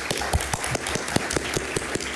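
Audience applauding, many hands clapping at once in a dense, irregular stream.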